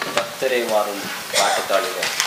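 Voices of a small group of carol singers over a handheld microphone, two held, gliding vocal phrases, with crackling noise.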